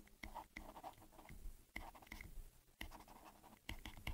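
Faint scratching and light tapping of a stylus writing on a pen tablet, a string of short strokes and small clicks as the handwriting goes down.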